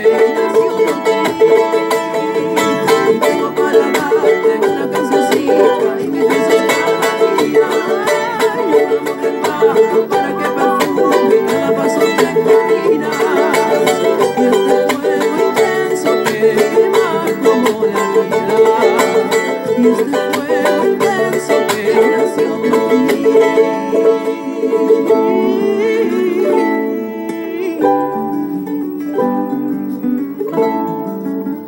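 A charango, the small Andean ten-string lute, strummed in a fast rasgueo of down and up strokes with muted chops. Near the end the rapid strumming gives way to slower, separate down-strums.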